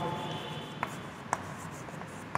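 Chalk writing on a blackboard: faint scratching, with two sharp taps of the chalk about half a second apart.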